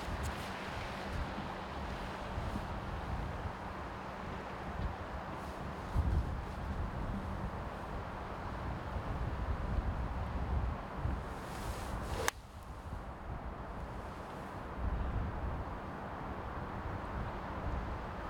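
Wind buffeting the microphone in gusty low rumbles throughout. About twelve seconds in, a single sharp click: a nine iron striking a golf ball.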